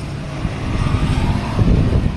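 A motor vehicle's engine running close by, a low hum that grows louder in the second half.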